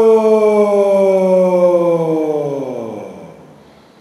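A man's long, loud voiced sigh, an open "aaah" on the out-breath. It slides steadily down in pitch and fades out about three seconds in.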